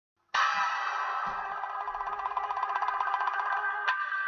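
Music that starts suddenly about a third of a second in and carries on steadily, many tones at once with a fast even pulse.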